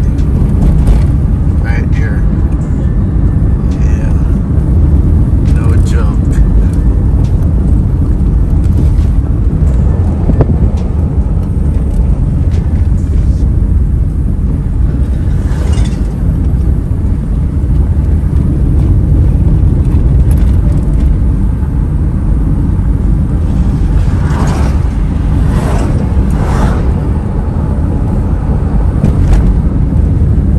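Inside a moving car: a steady low rumble of road and engine noise.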